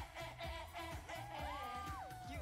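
K-pop dance track with a steady beat and group vocals chanting "eh eh eh", playing fairly quietly.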